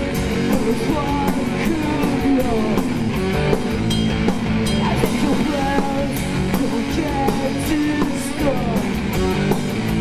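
A rock trio playing live: electric guitar, bass guitar and drum kit.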